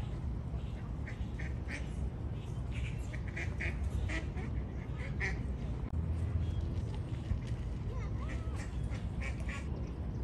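Canada geese giving short, repeated calls in clusters, over a steady low rumble.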